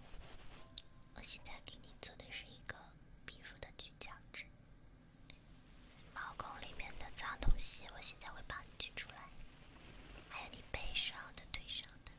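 Close-miked whispering into an ear-shaped binaural microphone, with short wet mouth clicks scattered through the first half. A single loud thump about seven and a half seconds in stands out above the rest.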